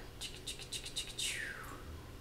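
A quick run of about eight small, high ticking clicks, followed by a short whistle-like sweep that falls in pitch.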